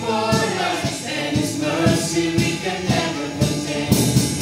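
A small choir singing a gospel worship song in unison, a woman's voice leading into a microphone, with acoustic guitar and bass guitar accompaniment over a steady beat.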